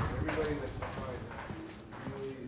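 Indistinct voices talking in the background with hard-soled footsteps clicking on a studio floor.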